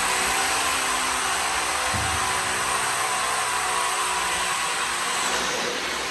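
Steady whir of a motor under a strong, even hiss of moving air, with one low thump about two seconds in.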